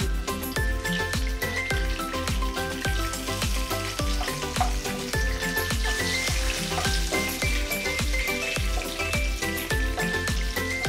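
Bay leaves, dried red chillies and whole spices sizzling in hot oil in a frying pan, stirred with a wooden spatula. Background music with a steady beat plays throughout.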